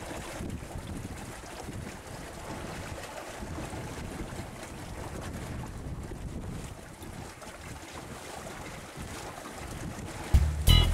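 Wind rushing over the microphone aboard a sailing yacht under way, with low rumbles, over a steady wash of sea water. No gull calls stand out.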